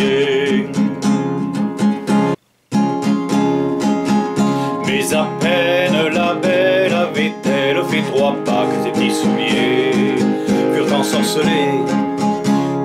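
Nylon-string classical guitar strummed in a steady rhythm, with a wavering vocal melody over it in places. The sound cuts out for a moment about two and a half seconds in.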